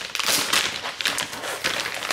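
Plastic packaging of frozen fish fillets crinkling and rustling as it is pulled and torn open by hand: a fairly loud run of irregular crackles.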